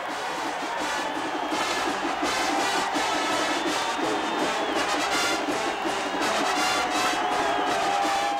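Marching band playing a brass-led tune, with a crowd cheering underneath.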